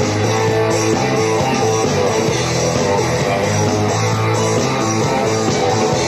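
Live rock band playing an instrumental passage with guitar to the fore and no singing, at a steady volume.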